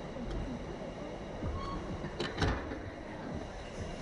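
Slingshot ride capsule swaying on its cables near the end of the ride: a steady rumble of wind and machinery, with two sharp clacks in quick succession a little past halfway.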